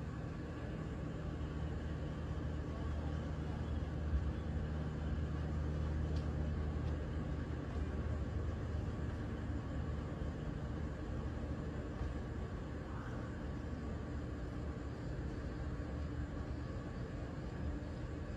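Steady low hum of distant engine noise, a little louder a few seconds in, with one faint tick about four seconds in.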